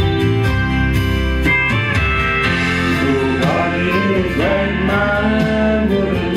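Country music accompaniment playing an instrumental passage between sung lines, led by guitar over a steady beat.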